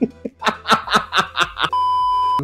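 A man snickering in a quick run of short breathy laughs. Near the end a steady, high-pitched censor bleep cuts in.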